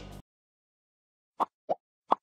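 Two short pop sound effects about a second and a half in, a quarter of a second apart, the second one lower, of the kind laid over an animated like-and-subscribe end card.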